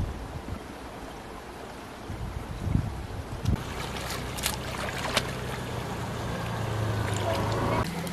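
Hands sloshing and splashing in a shallow, flowing stream as they feel along the streambed, with sharper splashes from about halfway through.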